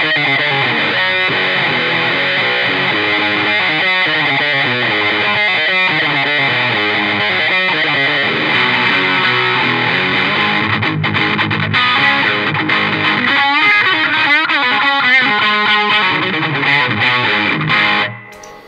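Les Paul-style electric guitar played with overdrive distortion through a Tone City Funny Boy envelope filter, a continuous rock lead with wah-like filter sweeps, the sweeps clearest in the last few seconds.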